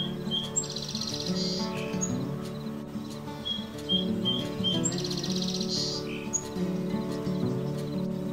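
Cassin's kingbird calling twice, each time a few short high notes followed by a buzzy rattle about a second long, over background music.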